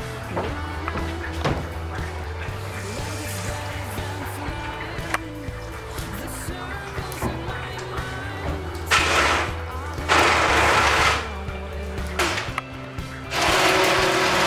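Background music, then an electric stick blender run in three short bursts in the last five seconds, grinding fried garlic, almonds and walnut with spices into a paste; the blender bursts are the loudest sound.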